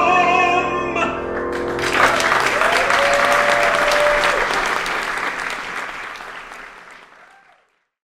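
A male singer holds the final note of a patriotic song with vibrato over piano accompaniment, ending about a second in. The audience then applauds, with one long held cheer in the middle, and the applause fades away toward the end.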